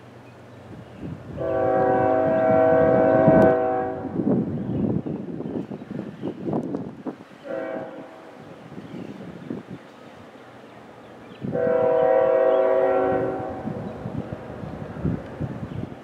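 Air horn of CSX freight train Q350's lead locomotive, an ES44AH, sounding a multi-note chord: a long blast a second or so in, a brief faint one near the middle, and another long blast near the end. Rumbling noise fills the gaps between blasts.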